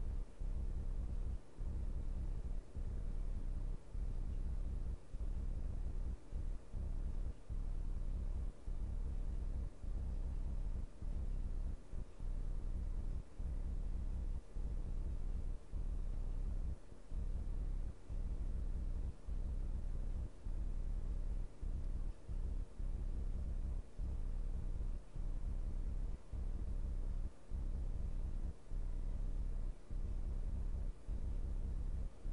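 Steady low room hum with no playback heard, cut by brief dropouts at irregular intervals of roughly half a second to a second.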